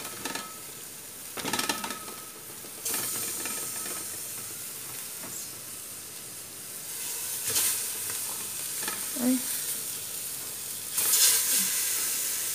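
Chicken pieces going into a pot of onions and vegetables frying in hot oil: a steady sizzle that swells louder a few times, about three seconds in, again past the middle and near the end.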